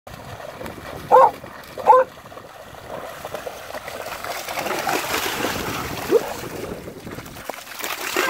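Dogs splashing and running through shallow water, with two short, loud barks about one and two seconds in, then a steady wash of splashing.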